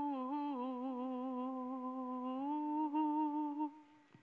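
A woman humming a wordless, unaccompanied melody in a long held line with a slight waver in pitch. It rises a little about halfway through and stops shortly before the end, closing the song.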